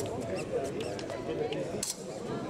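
Fencing shoes squeaking and tapping on the piste during footwork, short high squeaks and a few sharp taps scattered through, over steady background chatter in the hall.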